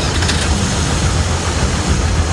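Street traffic: car engines idling and running, heard as a steady low rumble with road noise.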